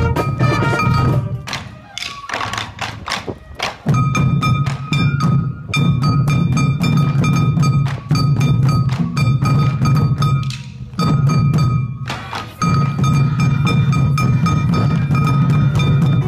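Live parade music. A brass marching band gives way after about a second to hip-worn taiko drums beaten in a fast, steady rhythm by dancers. From about four seconds in, a high melody of long held notes plays over the drums, pausing briefly between phrases.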